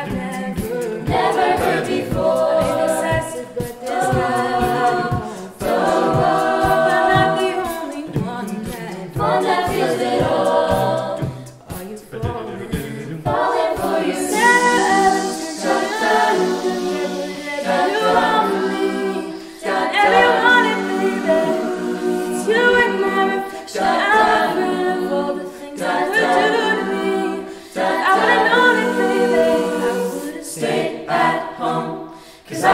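An a cappella vocal group singing close-harmony chords on wordless syllables. A vocal-percussion beat of low thumps runs underneath and drops out about halfway through, leaving only the voices.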